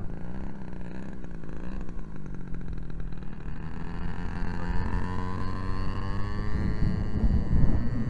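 Radio-controlled Ryan STA model plane's motor running, its pitch rising about halfway through as it is throttled up for the takeoff run. Gusts of wind buffet the microphone near the end.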